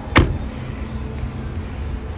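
A single sharp knock just after the start, then a steady low rumble.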